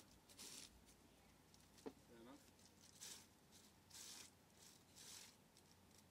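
Faint scuffs of boots being wiped on the bristle brushes set in a metal boot-cleaning grate, a few short strokes about a second apart, with a single sharp click just before two seconds in.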